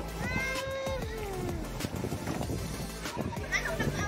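People's voices calling out, one long falling call about half a second in and more calls near the end, over the steady low hum of a pumpboat engine.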